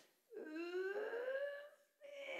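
One long drawn-out vocal sound, about a second and a half, rising steadily in pitch without a break.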